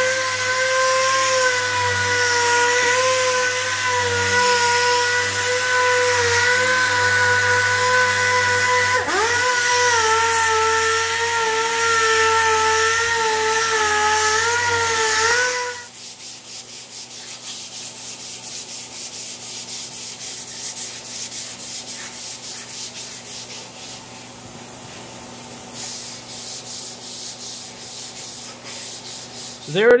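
Handheld disc sander whining steadily as its abrasive disc strips the coating from a steel roll-cage tube, its pitch dipping briefly under load about nine seconds in. It stops about halfway, and quieter rhythmic rubbing on the tube follows, about two strokes a second.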